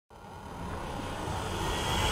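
Intro sound effect for an animated logo: a rumbling rise that grows steadily louder throughout.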